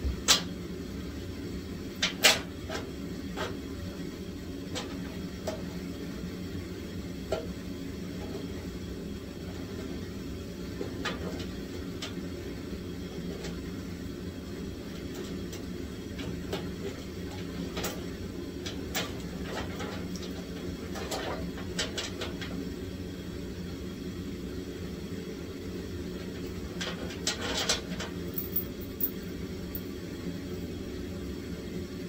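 Scattered clicks and knocks of pliers and metal parts being worked by hand around the radiator mounting at the front of a dirt race car, over a steady low hum. The sharpest knocks come just after the start and about two seconds in, with a cluster near the end.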